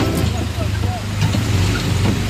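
Small gasoline engine of a Disneyland Autopia ride car running steadily as a low drone, heard from the car's seat, with faint voices around it.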